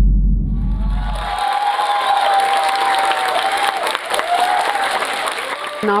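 Audience applause that rises about half a second in and carries on steadily, with a wavering tone over it. At the start a deep bass rumble from the intro sting music fades out about a second and a half in.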